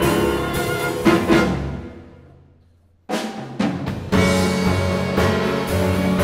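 Grand piano and string orchestra playing a tango arrangement. A sharp accented chord about a second in dies away to a brief near-silent pause, then the ensemble comes back in with accented strokes just after three seconds and plays on in full from about four seconds.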